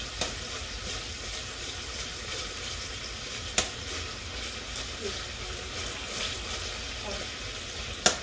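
Cherrywood smoked bacon sizzling as it renders in hot oil and meat drippings in a pot, stirred with metal tongs. One sharp click about halfway through.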